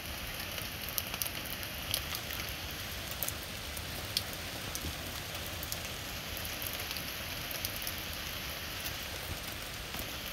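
Steady rain falling: a continuous hiss with scattered faint ticks of drops.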